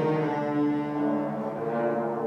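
Concert wind band playing live, with brass holding sustained chords that change about a second in.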